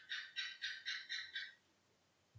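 An animal call: a faint run of high chirps, about four a second, that stops about a second and a half in.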